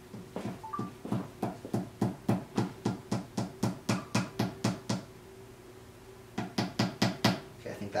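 Small hammer tapping a wooden peg into a cowboy boot's sole on a last, to seat the peg: quick light taps, about three a second for some four seconds. After a short pause comes a second brief run of taps, the last one the loudest.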